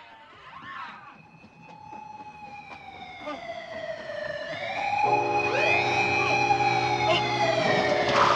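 Siren sounds wailing and gliding in pitch, several overlapping as they fade in and grow louder. About five seconds in, a steady low droning chord joins them as the track's intro music begins.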